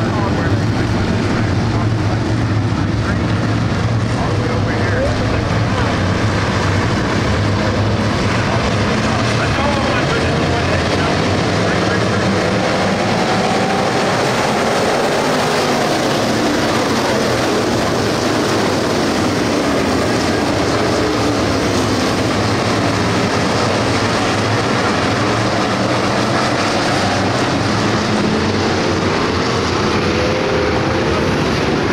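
A pack of stock-bodied dirt-track race cars running at racing speed, a loud, unbroken engine din with engine notes rising and falling as cars pass.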